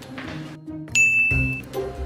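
A single high, clear ding about a second in, held for just over half a second, over background music with a steady beat.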